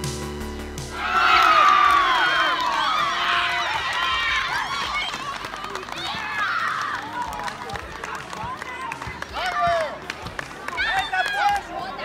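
Excited shouting and cheering in high-pitched voices, greeting a goal. It breaks out loudly about a second in, tapers away, and flares up again with a few more shouts near the end. A music track cuts off just after the start.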